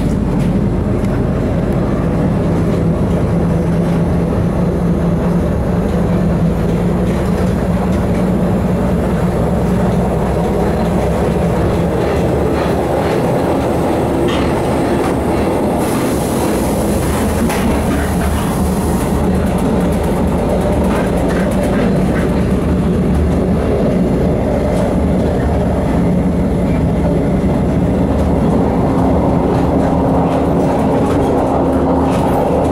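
Inside a Czech Railways class 814.2 RegioNova two-car diesel railcar under way: the steady drone of the diesel engine and running gear, with wheels clicking over rail joints through the middle stretch. A high hiss comes in for a few seconds around the middle.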